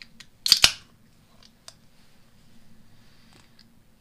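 Two sharp clicks close together about half a second in, then a few lighter clicks and taps as hand tools and chainsaw parts are handled on a workbench, over a faint steady hum.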